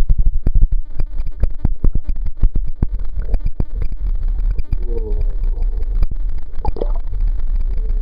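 Muffled underwater sound picked up by a waterproof camera held below the surface: a heavy low rumble of water moving against the housing, with rapid clicks and knocks through the first few seconds that then settle into a steadier rumble.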